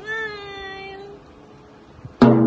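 A single high-pitched vocal cry, about a second long, its pitch easing slightly downward.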